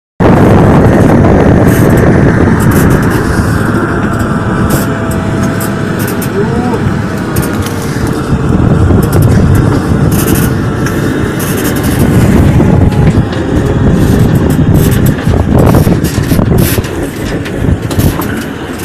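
Column of military vehicles driving past, a loud continuous rumble with scattered sharp knocks.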